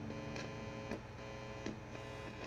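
Low steady electrical hum from a cheap practice bass amp left on while the bass is not being played, with three faint clicks.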